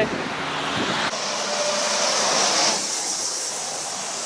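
Highway traffic passing close by: a steady rush of tyre and engine noise. About a second in, the hiss of a passing vehicle swells, then fades again before three seconds.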